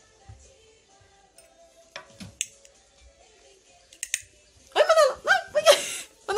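Faint background music with a few light clicks, then, in the last second and a bit, loud high-pitched voices laughing and squealing.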